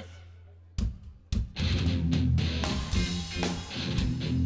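Live rock band with electric guitars and drums: after a break in which a low held note fades out, two sharp hits land about a second in, and the full band comes back in half a second later and plays on.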